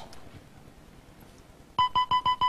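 A quiet pause, then near the end a quick run of short electronic beeps, several pitches sounding together, from the Lingo game board as the letters of the guessed word light up one by one as correct.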